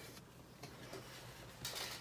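Quiet room tone, with a faint, brief rustle near the end as a hand moves over the journal's paper pages.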